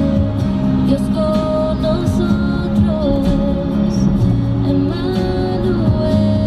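Background music: a song with steady held notes that change every second or so.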